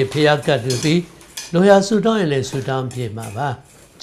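A man speaking in short phrases, with brief pauses between them.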